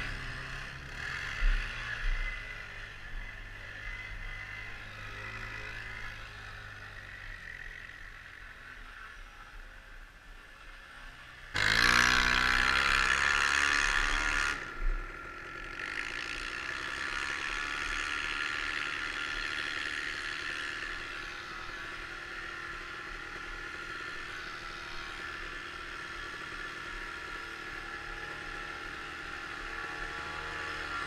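An off-road quad or three-wheeler engine heard close up from the rider's own machine. It runs at a varying pitch, rises to a loud burst of throttle about twelve seconds in that lasts some three seconds, then drops back and runs steadily at a near-constant pitch.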